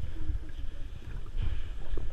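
Muffled, irregular low rumble of water moving against a submerged camera's housing in shallow sea water.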